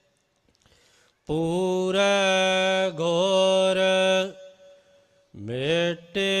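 A man's voice chanting Gurbani in slow melodic recitation, drawing out long steady notes. After a brief pause, one long held note runs from about a second in to past four seconds, and the next phrase begins with a rising pitch near the end.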